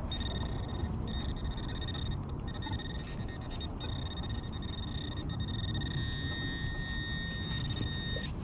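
Handheld metal-detector pinpointer held in a dug hole, sounding a steady high tone with a few brief dropouts, which cuts off near the end: metal is right at the probe's tip.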